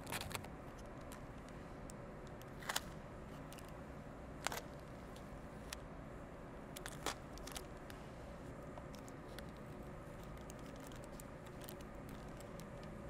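Thin PET bottle plastic and clear packing tape being handled: a few isolated sharp crackles and clicks, the loudest about three and four and a half seconds in, over a steady low background hum.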